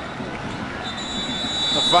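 Referee's whistle blown in one steady, high blast that starts about a second in and lasts about a second: the final whistle ending the match.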